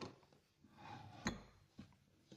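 Glass bottles knocking on a wooden cabinet shelf as one is taken out, with a click at the start and a sharp knock a little over a second in.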